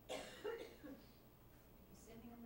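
A person coughing twice in quick succession, the second cough a little louder, about half a second in.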